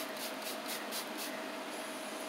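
Pump spray bottle of facial mist spritzing in a quick run of short hisses, about four or five a second, stopping a little over a second in. A faint steady hum lies underneath.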